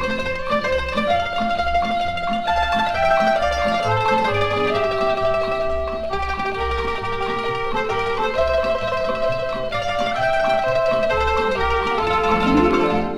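Instrumental break in a 1950s Italian orchestral popular song, with no singing: a plucked-string lead, mandolin-like, plays a melody of long held notes over a steady bass beat.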